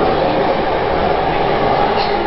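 Electric commuter train running past on the neighbouring track: a steady rolling rumble heard through the open doors of a stopped train car.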